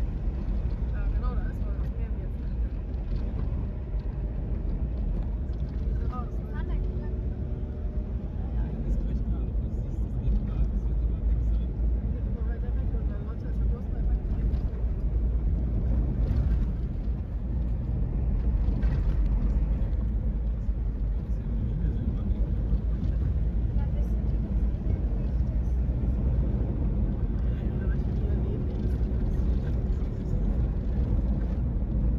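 Vehicle driving along a rough sandy desert track: a steady low rumble of engine and tyres that holds at the same level throughout.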